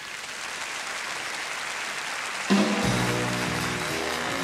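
Audience applauding, then about two and a half seconds in a jazz big band comes in with a loud accented opening chord and holds sustained notes.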